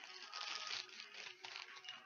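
Faint handling noise as a cotton makeup pad is taken out by hand, a little louder in the first second.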